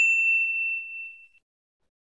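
A bright single-note bell ding sound effect, struck just before and ringing out, fading away over about a second.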